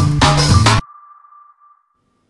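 Intro jingle with a steady beat that cuts off suddenly near the start, leaving a single high ping that rings on and fades away.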